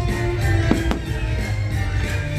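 Fireworks going off over the show's music, with two sharp bangs close together a little under a second in.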